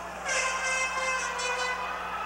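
A sustained horn-like tone with many steady overtones, starting about a quarter second in and holding without changing pitch.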